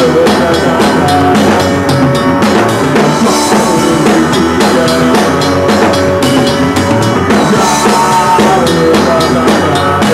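Rock band playing live and loud, with the drum kit to the fore: a steady driving beat of bass drum and cymbals under pitched instrument lines.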